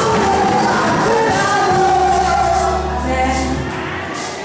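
Congregation singing a praise song with instrumental backing, holding a long final note over a sustained low chord that fades away near the end.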